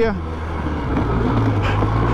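Polaris Sportsman 700 Twin ATV's twin-cylinder engine running at low, steady revs while the quad is ridden along.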